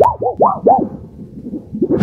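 Electronic, synthesizer-like sound effect: four quick pitched swoops that rise and fall in the first second, then a softer stretch and another swoop starting near the end.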